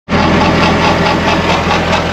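Skid-steer loader engine running steadily, heard from the operator's seat in the open mesh-sided cab.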